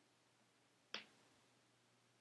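A single short, sharp click about a second in, against near silence and a faint steady hum.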